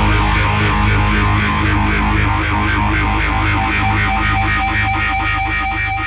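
Distorted electric guitar, heavy with effects, ringing on and slowly fading as a nu metal song closes.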